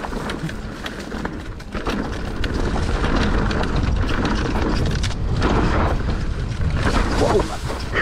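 Mountain bike descending a rough dirt singletrack without its chain: tyres rolling and crunching over dirt, with scattered knocks and rattles from the bike and low wind buffeting on the handlebar camera's microphone. Tall grass brushes against the bike along the trail edge.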